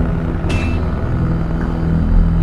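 Cinematic logo-reveal sound effect: a low, sustained rumbling drone, with a short bright metallic ping about half a second in.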